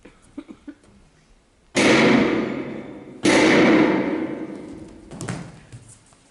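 Stage sound effect over the hall's loudspeakers: two loud, sudden hits about a second and a half apart, each ringing out and fading over more than a second, then a softer hit near the end.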